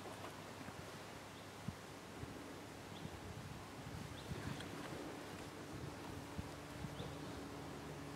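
Quiet outdoor background: a faint even hiss with a faint steady hum and a few scattered soft clicks.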